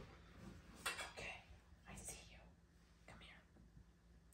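Near silence: quiet room tone with a few faint, soft, breathy sounds about one, two and three seconds in.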